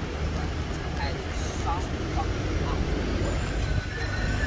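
Busy city street: a steady rumble of road traffic with indistinct snatches of passers-by's voices.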